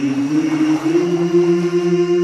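Unaccompanied vocal nasheed: several voices in harmony holding long, steady notes, with only small shifts in pitch.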